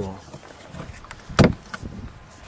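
One hard thump about one and a half seconds in, followed by a few light knocks, as a hand handles the molded side trim panel in a car trunk.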